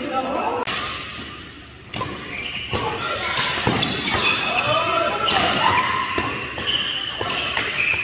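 Badminton rackets striking a shuttlecock in a fast rally, a string of sharp hits about a second or less apart, echoing in a large hall. Players' voices call out between the shots.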